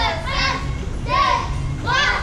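Children's voices calling out short rhythmic chant phrases, one about every three-quarters of a second, over a low steady rumble.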